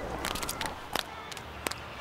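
Low background ambience with a few short clicks between spoken words.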